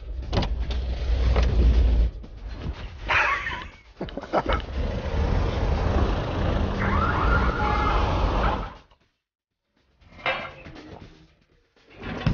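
Road traffic: a steady low rumble of vehicles, with a wavering high tone about three seconds in and a steady tone near seven seconds, like a siren or horn. The sound cuts off abruptly about nine seconds in, then returns more faintly.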